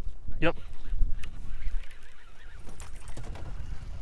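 Low wind rumble on the microphone in an open boat on a lake, with one short spoken "yep" about half a second in.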